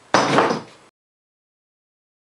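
A short noisy scrape, under a second long, as the wooden tailstock of a homemade lathe is handled on the bench. The sound then cuts off abruptly to dead silence.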